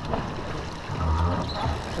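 Water rushing along the hull of a T-10 racing sailboat under way, a steady wash with low rumble beneath it.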